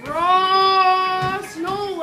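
A young voice sings one long held note for about a second and a half, then a shorter note that rises and falls.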